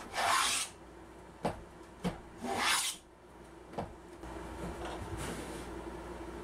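Combination plane cutting a groove in an ash board: two strokes of the blade through the wood, about two seconds apart. A few light clicks fall between and after them.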